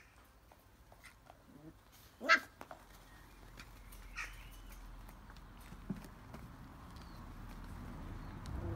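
Puppies at play: one short, sharp yelp about two seconds in, the loudest sound, then a fainter squeaky yip a couple of seconds later, with light scattered clicks and scuffles.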